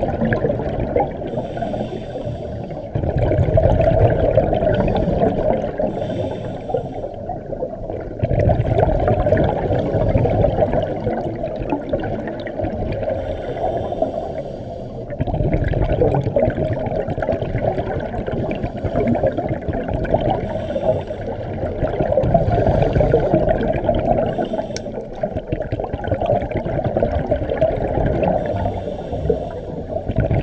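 Underwater scuba breathing: bubbles rushing from a regulator's exhaust, swelling in surges of a few seconds every five to seven seconds with each exhalation.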